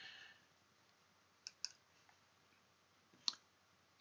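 Near silence with a few faint computer clicks as the presentation is advanced to the next slide: two quick clicks about a second and a half in, and one more near the end.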